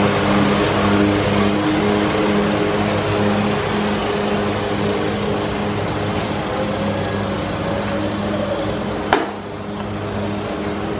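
Steady hum of a running motor, with one sharp pop about nine seconds in as a pitched baseball smacks into the catcher's mitt.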